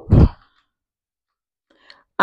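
A woman's short voiced sigh at the very start, then more than a second of silence and a faint in-breath near the end.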